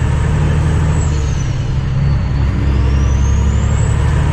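Cummins ISX diesel engine of a 2008 Kenworth W900L heard from inside the cab, running steadily, its note easing briefly about halfway through. A faint thin whine rises and falls slowly above it.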